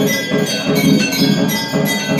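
Brass temple bells rung over and over during an aarti, struck about three times a second, their ringing tones overlapping.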